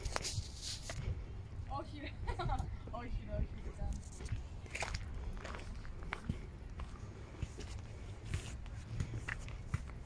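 Footsteps on a dry dirt forest path, a scatter of irregular sharp steps, with faint voices talking in the background over a low steady rumble.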